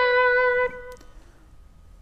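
Electric guitar sustaining a single fretted note, a B at the 12th fret of the B string, just released from a bend and held at pitch. The note is cut off about two-thirds of a second in, and the rest is quiet.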